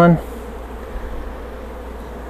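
Honeybees buzzing steadily around an open hive, a constant hum with no clear breaks.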